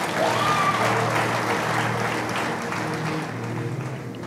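A congregation applauding, over soft background music with held low notes; the clapping thins out toward the end.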